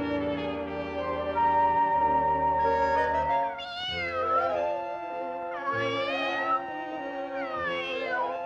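Cartoon kitten meowing twice, wavering calls about halfway through and again near three quarters of the way, over an orchestral cartoon score with brass holding long notes.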